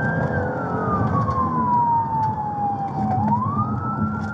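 Police siren on a slow wail: its pitch falls steadily for about three seconds, then starts rising again near the end. It is heard from inside a moving patrol car, over engine and road rumble.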